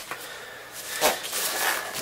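Hands handling white polystyrene foam packing inside a cardboard box: low rubbing, with one sharper scrape about a second in.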